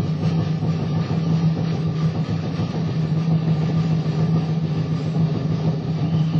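Live jazz-rock band in an audience recording: fast, dense drumming and percussion over a low note held steady underneath.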